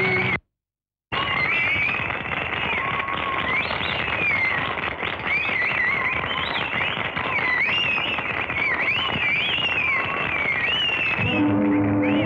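A crowd cheering and clapping, with shrill, wavering whistles rising and falling above the din. The sound cuts out completely for under a second just after the start. Music comes in near the end.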